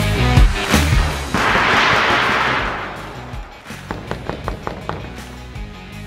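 Corrugated metal roofing sheet pushed and shaken by hand, giving a loud rattle of about two seconds, then a much quieter run of clicks and knocks as the multilayer thermoacoustic roofing sheet is moved the same way. The insulated sheet is the quieter of the two. Background music plays throughout.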